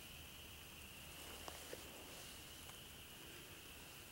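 Near silence: a faint steady hiss, with two faint ticks about a second and a half in.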